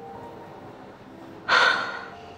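A woman's short, sudden audible breath about one and a half seconds in, fading within half a second, over faint background music.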